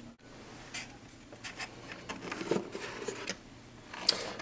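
Faint handling noise of a spray-painted cardboard box: scattered light rubs and taps as it is taken hold of.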